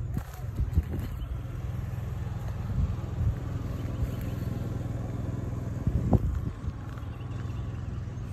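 Footsteps on grass and a few soft handling thumps over a steady low rumble as a phone is carried along the side of a trailer, with a sharper thump about six seconds in.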